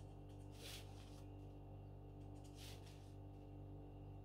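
Near silence: a steady low hum with a few faint, short scratches of a felt-tip marker on paper.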